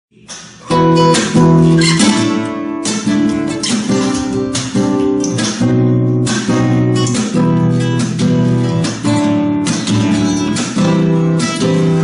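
Flamenco guitar strummed in a steady rhythm with thumb and finger strokes, the chords changing as it goes. It starts about half a second in.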